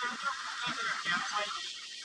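A big herd of wildebeest calling, many overlapping nasal grunts and honks, over a continuous rushing noise of running hooves as the herd stampedes into the river.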